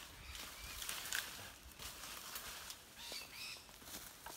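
Faint rustling of large cut banana leaves being handled and laid on the ground as mulch, with a few short bird chirps a little after three seconds in.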